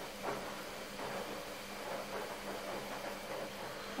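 Quiet room tone: a steady low hiss with a faint hum, and a few faint soft rustles.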